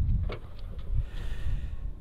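A Kia hatchback's tailgate latch clicking open once about a quarter second in, followed by a few faint knocks as the tailgate is lifted, over a low rumble.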